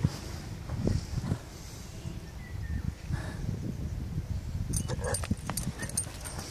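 A horse moving off on a sand arena: hoof steps, with a run of sharp clicks and knocks near the end, over a steady low rumble.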